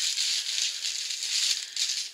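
Plastic bubble wrap crinkling and rustling in the hands as a small nail polish bottle is unwrapped, a continuous rustle of many tiny crackles.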